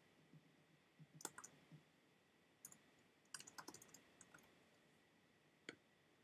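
Faint typing on a computer keyboard: short clusters of key clicks with pauses between, and a single click near the end.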